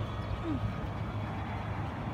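A steady low machine hum with a brief, faint falling squeak about half a second in.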